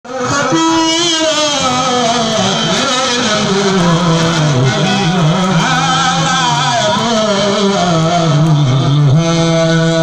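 A man chanting a khassaide, a Mouride devotional poem in Arabic, into a microphone. His voice slides and wavers through long phrases, then holds one steady note from about nine seconds in.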